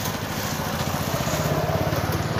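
A vehicle engine idling close by: a steady, rapid low pulsing that grows a little louder toward the end.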